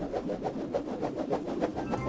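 Cartoon transition sound effect: a fluttering whir made of rapid even pulses, about ten a second, accompanying a spinning swirl wipe.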